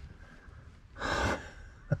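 A man's sharp, loud exhale about a second in, a frustrated sigh after losing a fish, followed by a short blip just before the end.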